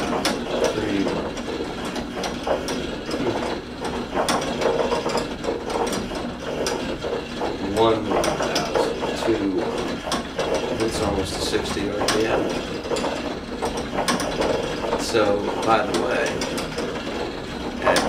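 A small battery-powered drive turning a weighted rotating arm at full speed, about 60 RPM, giving a continuous ratcheting, gear-like mechanical clatter with small repeated clicks.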